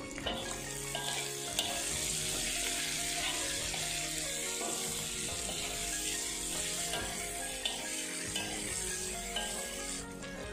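Sliced carrots and green peppers sizzling steadily in a hot steel wok while a slotted spatula stirs them, with a few light clicks and scrapes of the spatula against the pan.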